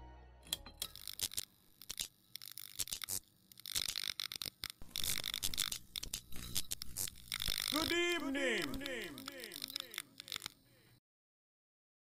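Sound effect under a music video's closing production logo: irregular crackling and clicking, then a quick string of short falling tones about eight seconds in, cut off to silence near the end.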